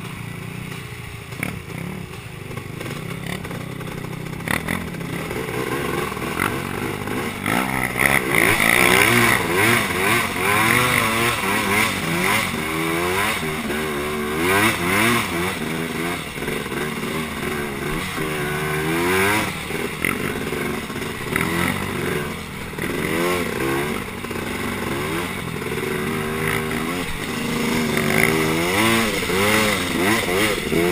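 Honda TRX250R two-stroke sport ATV engine being ridden hard, its pitch rising and falling again and again as the throttle opens and closes. It gets louder about eight seconds in and stays loud.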